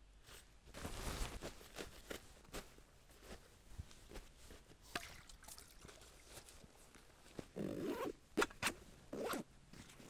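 Vanquest Falconer-27 backpack of 1000D Cordura nylon being handled and repacked: scattered rustles and light knocks of fabric and gear, with a longer zipper-like rasp a little before the end.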